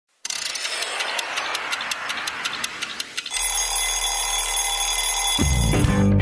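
An alarm clock bell ringing rapidly, about five strokes a second, for about three seconds, then giving way to a steady high ringing tone. Guitar music starts just before the end.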